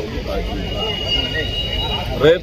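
A man speaking to reporters in an indian language, over a steady low rumble of street traffic.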